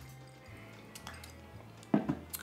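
Quiet background music with a low, steady bass, and a short knock of a drinking glass set down on a table near the end.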